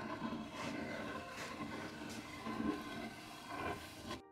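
Metal putty knife scraping stripper-softened paint sludge off a wooden drawer, in a few separate strokes.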